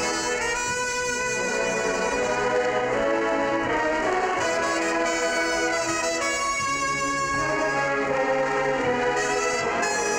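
Marching-style university band playing a Disney tune medley, with a featured trumpet soloist over full brass. The notes are held and the chords change every second or two.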